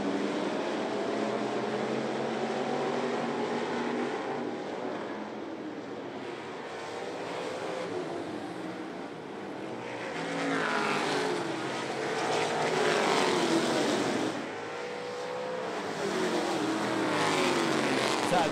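Several dirt-track stock car engines racing on a dirt oval, revving and passing, their pitch rising and falling as the cars go by. The engines grow louder in the second half as the pack comes past.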